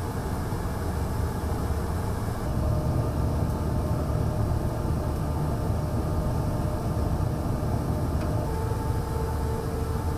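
Steady low rumble of airflow and engine noise aboard a tanker aircraft in flight during aerial refuelling, with a faint steady hum that grows a little stronger near the end.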